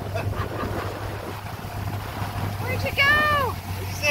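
Suzuki 90 outboard motor running steadily at speed, with water rushing in the boat's wake and wind on the microphone. Near the end comes one drawn-out, high-pitched excited squeal from a person.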